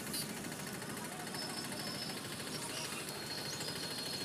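Busy street background: a steady wash of traffic noise with faint voices of people around.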